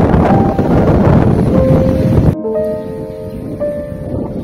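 Wind buffeting the microphone, a loud rough rush, with soft instrumental background music under it. About two seconds in, the wind noise cuts off suddenly, leaving only the music's held notes.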